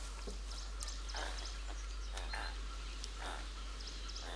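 A string of short, soft lemur calls, one every half second to a second, against quiet forest background.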